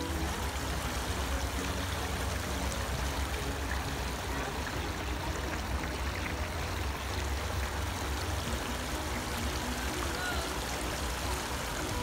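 Steady outdoor rushing noise with a low, fluctuating rumble underneath.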